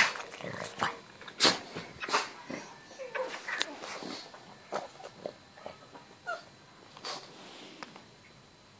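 A pug giving a string of short, sharp barks and huffs. They come thickest over the first four seconds or so, with the loudest at the very start, then fall to a few scattered ones.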